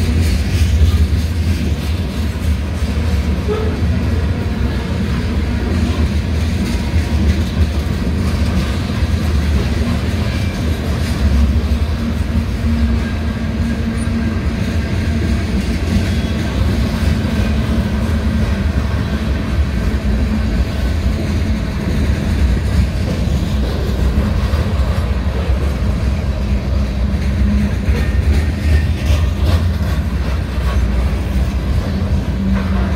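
Freight train of covered hopper cars and tank cars rolling past at a grade crossing: a steady, even rumble of wheels on the rails.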